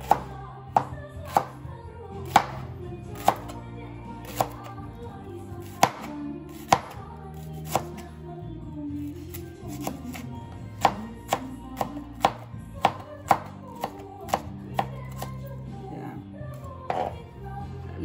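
Chef's knife slicing shallots on a plastic cutting board: sharp knocks of the blade meeting the board, irregular, about one or two a second, with a pause of a couple of seconds midway. Background music plays underneath.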